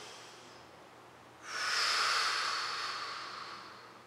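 A woman's long, audible exhale, starting about a second and a half in and fading away over two seconds, as she lowers from upward dog into plank. The tail of a softer inhale fades out at the start.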